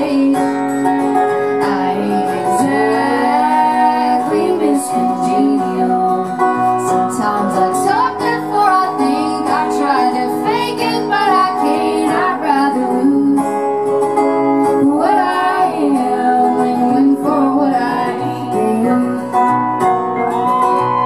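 Live acoustic country music: two acoustic guitars strummed and picked together in a steady song.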